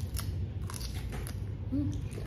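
Close-up chewing of firm, crisp green fruit, heard as a run of short crunches.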